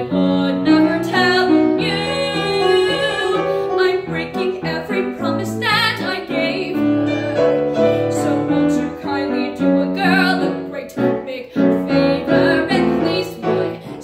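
A young woman singing a musical-theatre song with live grand piano accompaniment, several held notes sung with vibrato.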